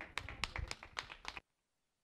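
Brief applause from a small group of people: a quick run of sharp, irregular hand claps that cuts off suddenly about one and a half seconds in.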